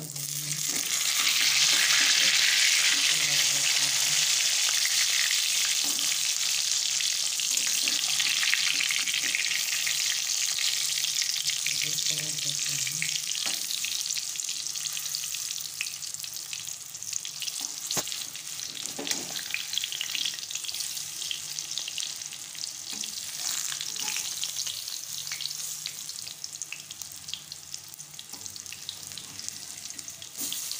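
Raw banana kofta balls deep-frying in hot oil in a kadhai: a loud sizzle that swells about a second in and slowly dies down. Now and then a metal spatula clicks against the pan as the balls are turned.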